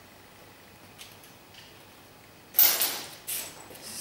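Low room tone for about two and a half seconds, then a loud, short scraping noise close to the microphone, followed by a second, weaker one under a second later.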